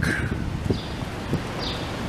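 Street ambience at a city intersection: a steady low hum of traffic and wind, with a few faint, short high chirps.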